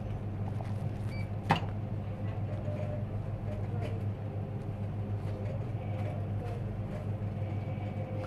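Steady low hum of a shop interior with a faint murmur of voices, broken once by a single sharp click about a second and a half in.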